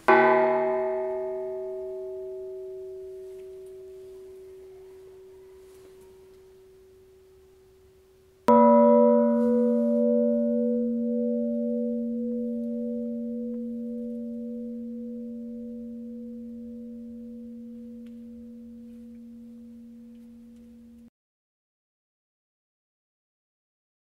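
Two historic bronze church bells, each struck once and left to ring out with a long fading hum: first the higher-pitched bell Catharina, then about eight seconds later the deeper bell Anna, whose tone wavers slowly as it dies away. The ringing cuts off abruptly near the end.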